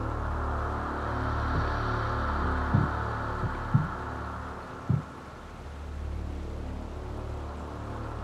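Sustained dramatic background score: a steady low drone with a soft hiss over it. A few brief low sounds come between about three and five seconds in.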